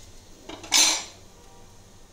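A brief metallic clatter of stainless-steel kitchenware a little under a second in, preceded by a fainter click, with quiet handling noise around it.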